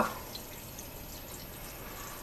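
Water poured steadily from a glass pitcher onto a bowl of staghorn sumac berries, a quiet, even splashing.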